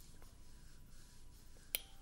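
Quiet room tone with one sharp click near the end.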